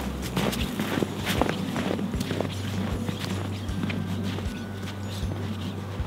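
Footsteps crunching in snow at an even walking pace, a couple of steps a second.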